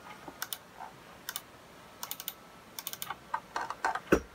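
Typing on the keyboard of an early-2006 15-inch MacBook Pro: short key clicks in small clusters, a few spread out at first and a quicker run toward the end.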